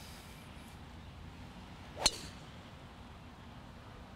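Golf driver striking a teed ball: a single sharp click about two seconds in, over low background.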